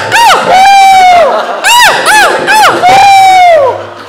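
A man's voice singing very high, loud wails whose pitch swoops up and down in short arcs, with two longer held notes.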